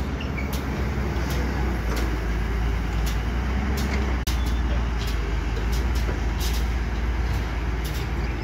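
Caterpillar hydraulic excavator's diesel engine running steadily under working load as the boom and bucket move, a deep continuous drone with occasional light ticks. The sound breaks off for an instant about halfway through.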